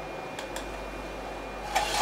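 Enclosed 3D printer's fans running with a steady hiss and a faint click about half a second in. Near the end comes a loud scraping rub as the printed part is worked off the build plate.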